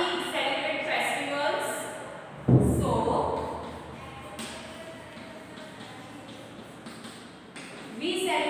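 A woman's voice, then a single heavy thump about two and a half seconds in, followed by chalk writing on a chalkboard: faint, light taps and scratches as a word is written.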